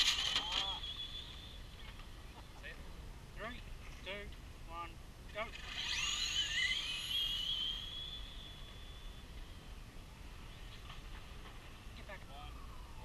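RC drag cars' electric motors whining as the cars run down the strip: a high whine near the start that fades, and a second one about six seconds in that rises in pitch, levels off and fades over about three seconds. Short bits of voices in between.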